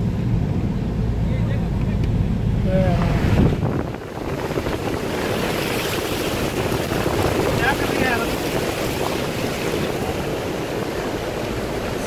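A car driving on a wet road, heard from inside. A low cabin rumble fills the first few seconds, then about four seconds in it drops away and a steady rushing hiss of air and wet tyres takes over.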